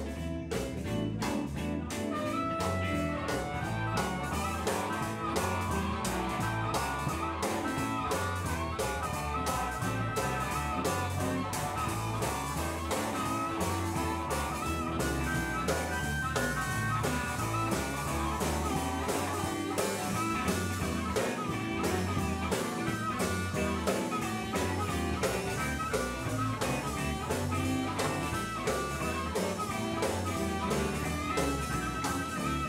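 Live blues band playing an instrumental passage: a harmonica, cupped together with a hand-held microphone, wails held and bending notes over electric guitars, bass guitar and drums.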